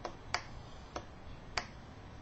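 Four sharp, short clicks at uneven intervals over a faint low room hum.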